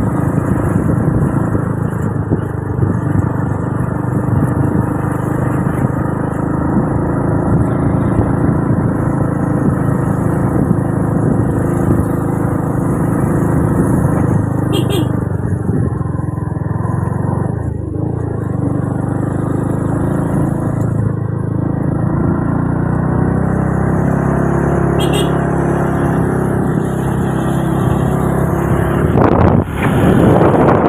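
Engine and road noise of a vehicle being driven steadily along a road, with a rush of wind on the microphone starting just before the end.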